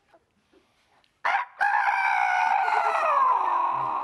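A man imitating a rooster's crow with his voice: a short first note about a second in, then one long, high call that slides down in pitch toward the end.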